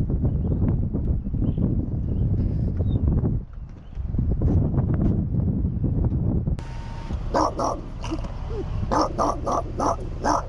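A dog in a pickup truck's cab giving a run of short, high, yipping barks and whines, starting about two-thirds of the way in and coming several in quick succession near the end. Before that there is only a dull low rumbling noise.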